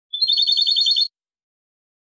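A European goldfinch (jilguero) sings one phrase of Málaga-style song: a high, rapid trill of about ten notes, lasting about a second.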